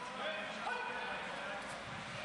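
A faint voice calling out in long, drawn-out tones, heard over the steady background noise of a large sports hall.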